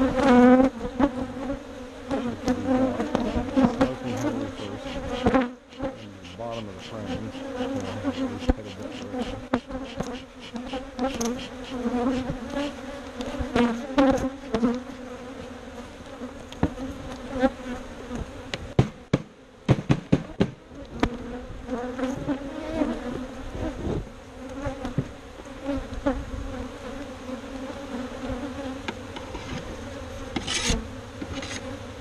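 Honeybees buzzing around an opened hive in a steady low hum, with scattered knocks and scrapes as hive boxes and frames are handled.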